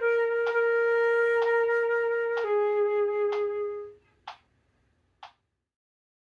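Concert flute holding long notes that step down in pitch. The last one dies away about four seconds in. Under it a metronome ticks at 64 beats per minute, and two of its clicks sound alone after the flute stops.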